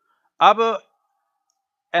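A man's voice saying one short word, then about a second of dead silence, then his speech picking up again near the end.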